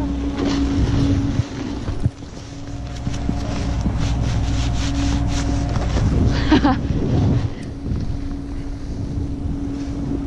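Wind rushing over a body-worn action camera's microphone while a snowboard scrapes and slides across packed snow, with a steady low hum underneath. A short laugh comes about two-thirds of the way through.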